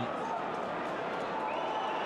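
Steady stadium crowd noise from a football match, an even murmur from the stands during open play.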